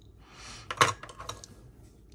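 Paintbrushes clicking against each other and the desk as one is picked up from the group: a brief soft rustle, then one sharp click just under a second in and a couple of lighter clicks after it.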